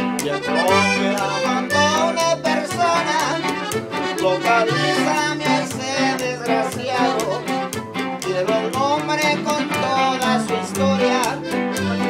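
Live norteño music: an accordion plays the melody over an upright bass thumping a regular two-beat bass line and a strummed guitar.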